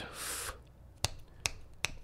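Fingers snapping: three sharp snaps in quick succession, about two and a half a second, starting about a second in, the snapping of someone trying to recall a name. A short soft breath comes before them.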